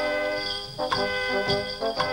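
A cobla, the Catalan folk band of reeds and brass, playing a dance tune with sharp percussive strokes about a second in and again half a second later.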